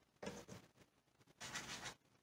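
Pencil scratching on chukar eggshells as the eggs are marked: two short, faint scratches, one just after the start and one near the end.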